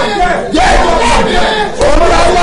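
Loud, impassioned shouting in fervent prayer: drawn-out vocal cries that rise and fall in pitch.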